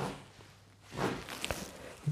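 Faint handling sounds of dressmaking: tailor's chalk drawing a line along a ruler on cotton fabric, a soft scrape about a second in, then a light tap as the plastic ruler is moved.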